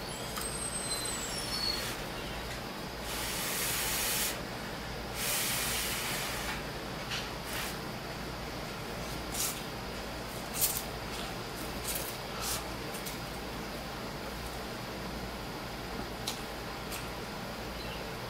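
A person slurping instant ramen noodles in two long, airy slurps a few seconds in, then chewing with scattered small mouth clicks and smacks.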